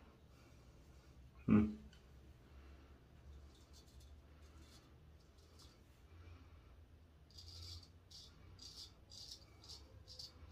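Henckels Friodur straight razor scraping through lather and two days' stubble on the neck, in a run of short faint strokes, about two or three a second, over the last few seconds. A single short dull thump about one and a half seconds in is the loudest sound.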